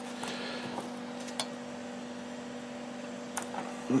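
A steady electrical hum, with a soft paper rustle near the start and a single light click about a second and a half in, as small circuit boards are set down on a notepad.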